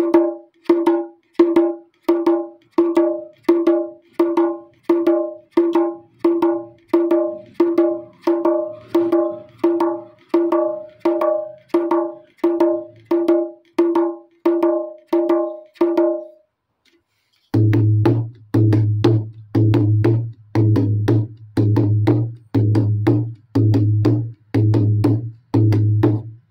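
Pair of hand drums (a dholak set) struck with the fingers in a steady bhangra pattern: a ringing, pitched stroke about every three-quarters of a second for the first two-thirds. After a short pause, the strokes continue with a deep bass boom under each one.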